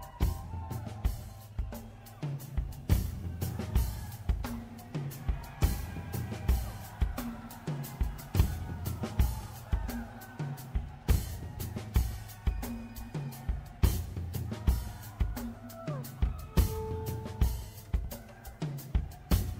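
Background music with a steady drum-kit beat and a repeating bass line, with kick, snare and cymbal hits.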